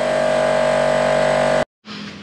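Small air compressor running with a steady motor hum, pumping air through a hose into an inner tube inside a motorcycle fuel tank. It cuts off suddenly near the end.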